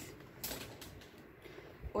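Faint handling noise as the bare-rooted orchid is lifted and moved, with one short, soft click about half a second in.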